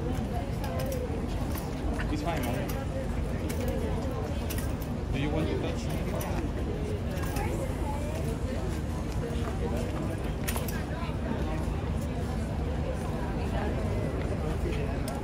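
Indistinct chatter of people's voices in the background, over a steady low rumble, with a few light clicks.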